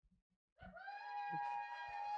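A single steady high-pitched note with several overtones, held for about two and a half seconds, starting about half a second in.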